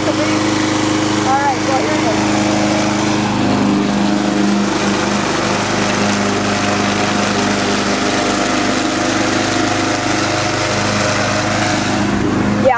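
Murray walk-behind rotary lawnmower's 4.5 hp Briggs & Stratton Quantum XTE single-cylinder engine running steadily as the mower is pushed through grass, cutting. Its pitch shifts slightly a few seconds in. The engine runs pretty good.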